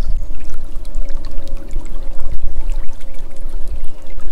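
Shallow chalk stream water running and gurgling, with a steady low rumble underneath.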